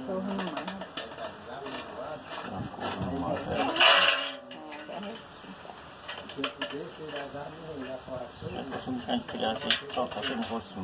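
People talking indistinctly in the background, with a loud, noisy vocal burst about four seconds in. A few short sharp clicks come later.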